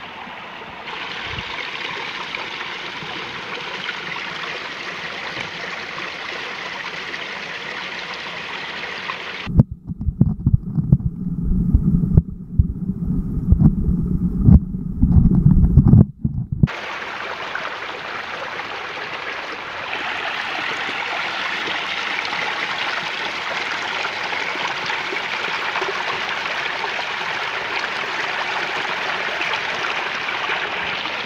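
Shallow creek water running and trickling over rocks and leaves. About a third of the way in, the sound turns muffled and boomy for about seven seconds, with loud low knocks and rumbles, as the waterproof camera is dipped underwater. The stream then returns, a little louder in the last third as the water splashes over a hand.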